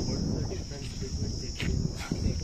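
A steady, high-pitched buzz of insects runs unbroken, over a low rumble of wind on the phone's microphone.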